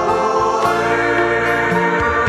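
Background music: a choir singing a Christian worship song over held chords and a bass line.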